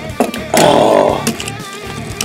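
Light clicks of die-cast toy cars being handled and set onto a plastic toy truck, then a short buzzing rasp of about half a second.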